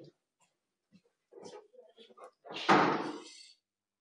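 A door closing with a bang about two and a half seconds in, dying away over about a second.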